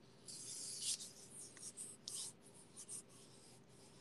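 Faint rubbing and rustling of hands, in short irregular scratchy bursts with small gaps.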